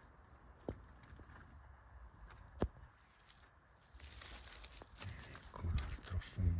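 Footsteps and rustling through dry forest-floor litter, with two sharp cracks early on and the rustling growing louder near the end.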